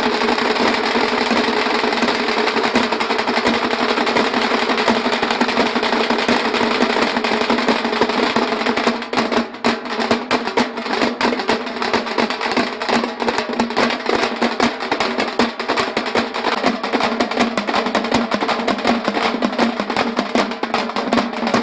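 A band of several large two-headed drums beaten with sticks, playing a fast, dense, continuous drumming rhythm close to a drum roll; the strokes stand out more clearly about halfway through.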